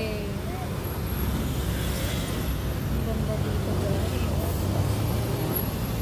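Steady road and engine noise heard from inside a moving car: a low hum with faint voices over it.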